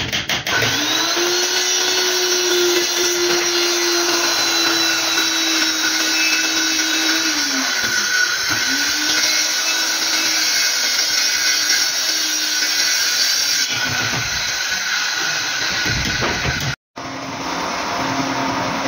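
Handheld circular saw running and cutting through a laminated plywood sheet, with a steady motor note. About eight seconds in the note sags briefly and then picks up again. The sound cuts out for a moment near the end.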